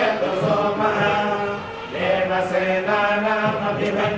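Hindu devotional chanting by a group of voices: a steady recitation on held, level pitches that step from note to note, dipping briefly near the middle.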